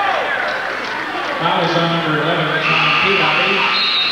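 Basketball arena crowd noise, a mass of voices, with steady held tones rising over it from about a second and a half in and a higher held tone near the end.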